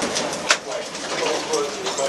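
Muffled, low voices in a small enclosed space, with a single sharp click about half a second in.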